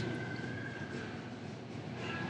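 Quiet bar room tone: a steady low hiss and hum, with a faint high tone that fades out about a second in.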